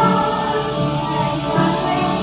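Children's choir singing together on stage, amplified through microphones.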